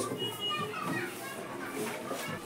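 Faint background chatter of children's voices while the room is otherwise quiet.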